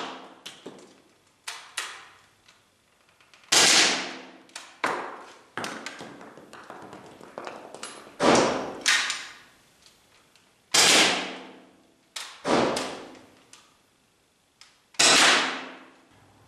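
Four shots from an Umarex T4E HDS68 CO2-powered .68-calibre paintball/pepperball marker, a few seconds apart, each a sharp crack that dies away in an echoing room. Quieter knocks and clicks fall between the shots.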